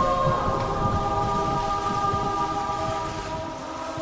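Dramatic intro music: a held chord of several sustained tones over a low, thunder-like rumble, easing down toward the end.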